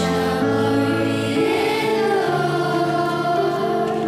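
Choir singing a slow communion hymn, with long held notes that change chord every second or so.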